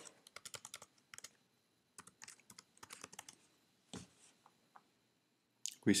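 Computer keyboard typing: a quick run of keystrokes in the first second, then scattered single keystrokes with pauses, and a louder keystroke about four seconds in.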